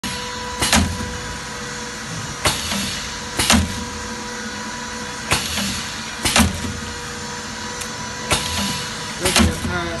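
Insole foil hot-stamping press clacking sharply as its stamping head strikes, seven strokes at uneven intervals of one to two seconds, over a steady machine hum.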